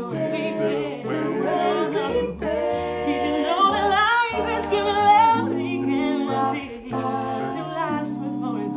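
Mixed five-voice a cappella group singing in close harmony, no instruments: a woman's lead voice sings high over held chords from the other voices, with a deep bass voice underneath. Around the middle the lead voice slides upward.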